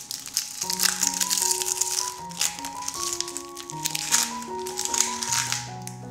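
Instrumental background music with a slow melody of held notes, over crisp, crackly sounds of a kitchen knife cutting an onion on a wooden board and the onion being handled several times.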